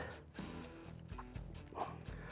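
Faint background music with a steady bed of sustained tones.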